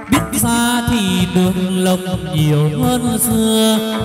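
Chầu văn ritual music: a singer holding long notes that slide up and down between pitches, over a plucked lute accompaniment.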